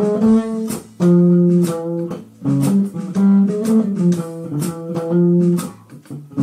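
Jazz trio music: a plucked bass plays phrases of held notes, with regular cymbal strokes from the drums and brief gaps between phrases.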